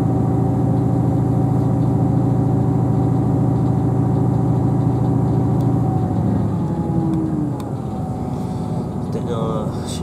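Inside the carriage of a Class 158 diesel multiple unit, the underfloor diesel engine runs with a steady drone over the rumble of the train in motion. About seven seconds in, the engine note falls in pitch and gets quieter as the engine drops back.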